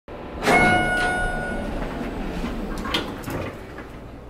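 An elevator chime rings once, a single ringing tone about half a second in, followed by the rumble of the elevator's stainless-steel doors sliding open, with a sharp click near the end.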